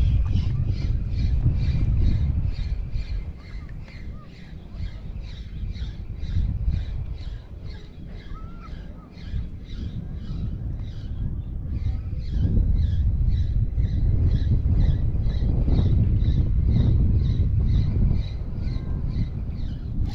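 Spinning reel being cranked to retrieve a lure, its turning rotor giving a soft regular tick about three times a second, with a brief pause about halfway. Wind rumbles on the microphone.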